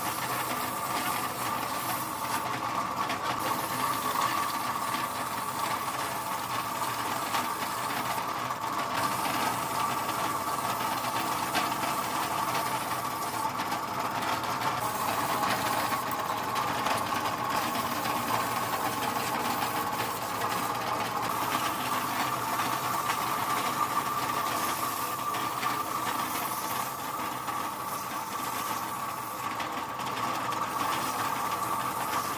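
Compressed-air spray gun with a red fluid canister hissing steadily as it blasts washing fluid over transmission parts, with a steady mechanical hum underneath.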